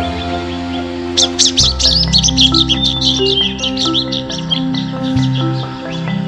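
Black bulbul calls: a quick run of loud, squeaky cheeping notes starting about a second in and fading out after a few seconds, over background music.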